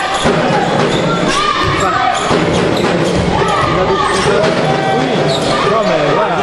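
Basketball bouncing on a wooden gym floor during a game, mixed with players' and spectators' voices in a large, echoing sports hall.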